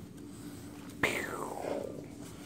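A man voicing a breathy, whispered 'pew' with his mouth, a single sweep falling in pitch, about a second in.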